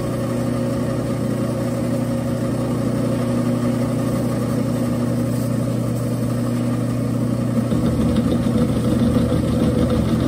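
Round-column mill's motor and spindle running steadily while an end mill cuts a flat on a half-inch threaded shaft; the cutting turns rougher and a little louder about three-quarters of the way through.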